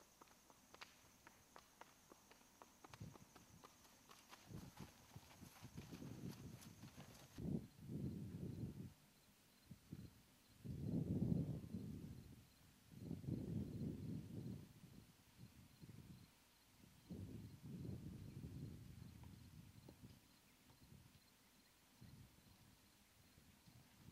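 A horse's shod hooves clip-clopping at a walk on an asphalt road, stopping suddenly a third of the way in. After that come several low rumbling bursts of a second or two each, louder than the hoofbeats.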